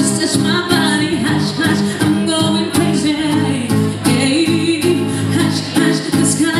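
Live acoustic pop song: a woman singing into a microphone, accompanied by an acoustic guitar.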